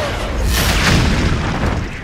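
Cartoon explosion sound effects: a continuous booming blast with a deep rumble, easing off near the end, with music underneath.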